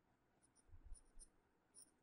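Faint taps and strokes of a stylus writing on a tablet screen, a few soft ticks about midway, otherwise near silence.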